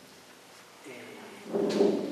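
A man's lecturing voice: a brief pause, then a drawn-out hesitant "é" as he starts speaking again.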